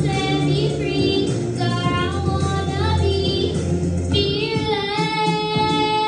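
A young girl singing a slow ballad into a microphone over a backing track with a steady bass, sliding between notes and holding one long note near the end.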